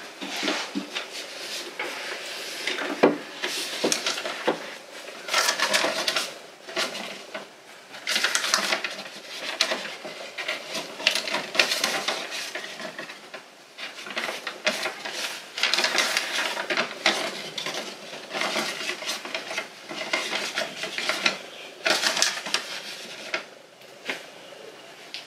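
Books being pulled out, shifted and pushed back along a bookshelf: a run of irregular knocks, scrapes and rustles as the volumes slide and bump against each other and the shelf.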